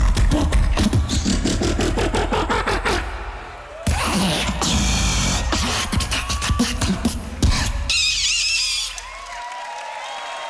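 Live solo beatboxing: rhythmic mouth-percussion hits over deep bass, pausing briefly about three seconds in before resuming. Crowd cheering near the end, then it drops quieter in the last second.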